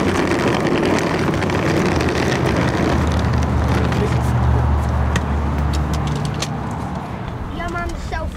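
Vehicle engines running at a roadside curb, a low steady rumble that grows strongest in the middle and eases toward the end, with scattered clicks and knocks.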